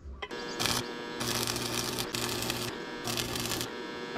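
Arc (stick) welder tack-welding a steel pipe joint: four short bursts of crackling arc, each under a second, over the steady electrical hum of the welding machine.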